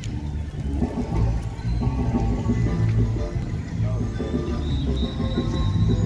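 Marimba band playing a tune: many quick, short struck notes over a steady low bass.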